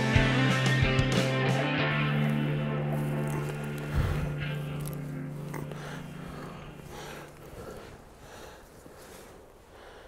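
Background rock music with guitar, with a single thud about four seconds in, then a held chord that fades away, leaving faint outdoor quiet near the end.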